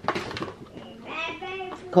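A cardboard food box handled and turned over in the hands, with a young child's voice faintly in the background about halfway through.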